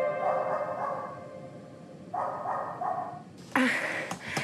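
A dog barking a few short barks, with a group of three about half a second apart in the middle, as background music fades out. Near the end a louder burst of breathy sound starts, the beginning of a woman's laugh.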